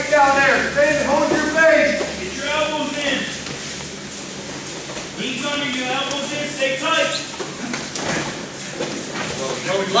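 A man's voice shouting coaching calls in a large, echoing practice room: drawn-out calls through the first three seconds and again from about five to seven seconds in, with quieter stretches between.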